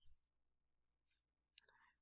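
Near silence: room tone, with two faint brief ticks in the second half.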